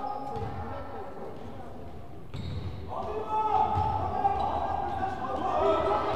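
A basketball dribbled on a hardwood gym floor, repeated thumps echoing in the hall, with spectators' voices rising about halfway through.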